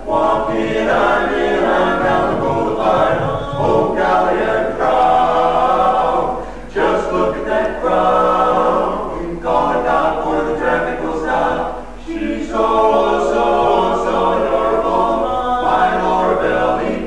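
Male barbershop quartet singing a cappella in four-part close harmony (tenor, lead, baritone and bass), in phrases with short breaks between them.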